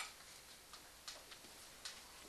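A few faint, sharp clicks or taps at uneven spacing, the first the loudest, over quiet background hiss.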